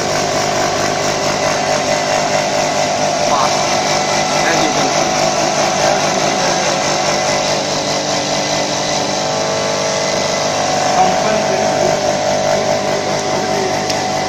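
Vibratory bowl feeders running under their vibrator controllers: a steady, unchanging mechanical buzz with a constant hum in it, amid factory noise.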